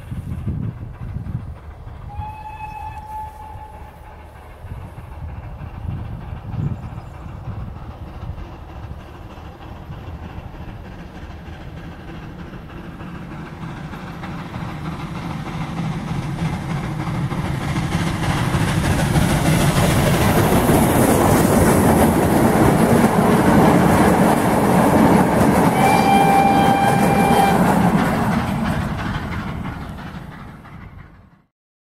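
Steam locomotive hauling a train, heard from far off as it approaches and passes close by. A short, distant whistle sounds about two seconds in. The rumble and rail noise build to a loud peak, and a second, louder whistle blast comes near the end.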